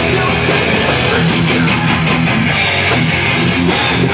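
Thrash metal band playing live at full volume: distorted electric guitars, bass and drums in a steady, unbroken wall of sound.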